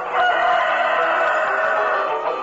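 A rooster crowing: one long, drawn-out call with a slowly falling pitch, over background music.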